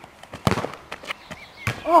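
Football kicked hard off an asphalt court: one sharp thud about half a second in, followed by a few lighter knocks.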